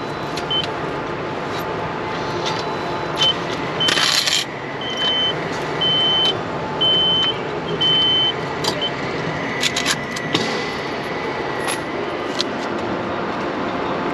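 Ticket vending machine beeping: a short rush of noise about four seconds in, then a string of high beeps about a second apart, the prompt to take the ticket and change. A few sharp clicks follow near ten seconds, over steady background noise.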